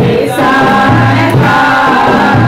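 Three women singing a worship song together into microphones, over an instrumental backing with a steady, repeating low bass line.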